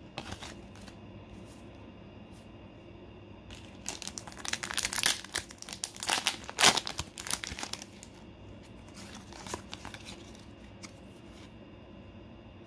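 Foil Pokémon booster pack wrapper crinkling and tearing as it is opened by hand: a few light rustles at first, then about four seconds of dense crackling in the middle, sharpest near the end of that stretch.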